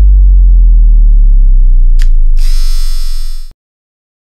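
Loud synthesized outro sound effect: a deep bass boom that slowly falls in pitch, a sharp click about two seconds in, then a bright buzzing high tone on top. Everything cuts off suddenly at about three and a half seconds.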